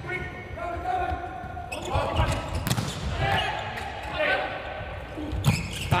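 Volleyball rally on an indoor court: the ball is struck sharply about three times, with drawn-out squeaks and calls from the court between the hits, all echoing in a large hall.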